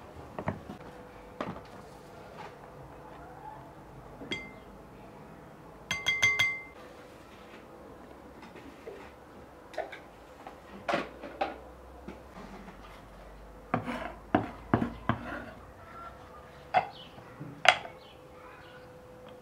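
Kitchen prep clatter: scattered knocks and clinks of a glass mixing bowl, utensils and ceramic dishes on a wooden table, with a short ringing clink about six seconds in. Near the end, sharper clicks as a wooden lid on a ceramic spice holder is lifted.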